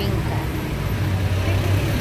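Street traffic noise: a vehicle engine running with a steady low hum under general road noise.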